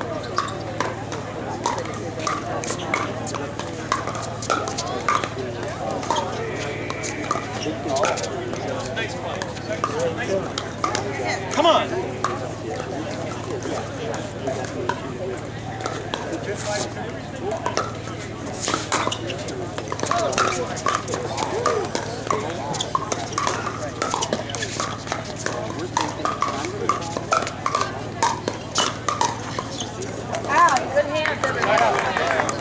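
Background chatter of players and spectators, with frequent sharp pops of pickleball paddles striking the plastic ball, coming more often in the second half.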